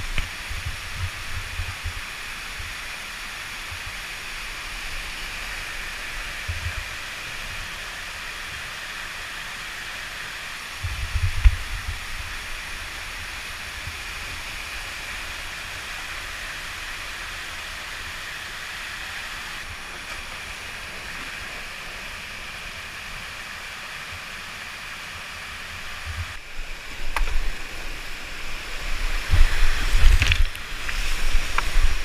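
Whitewater pouring down a steep rock slide on a creek at high flow: a steady, loud rush. Short low buffeting bursts on the microphone come about eleven seconds in and more often over the last few seconds.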